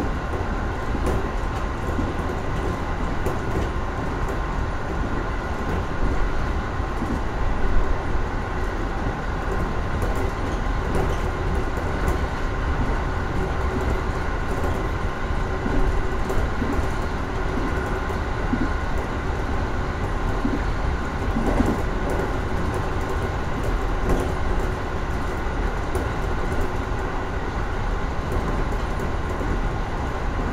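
A JR 415 series electric multiple unit running at speed, heard from inside its leading driving car: a steady rumble of wheels on rail with a faint steady hum of a few tones, and scattered clacks throughout.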